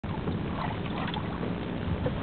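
Steady wind rushing on the microphone out on open water, with a low rumble underneath.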